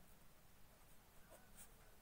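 Faint scratching of a ballpoint pen writing on notebook paper, a few short strokes.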